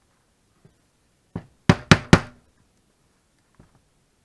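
Rubber mallet striking a leather hole punch to punch stitching holes in leather: one knock, then three loud knocks in quick succession about two seconds in, with a faint tap near the end.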